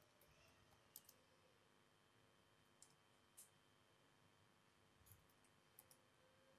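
Near silence with a few faint, scattered clicks of laptop keys or trackpad as someone searches on a laptop, two of them close together about a second in.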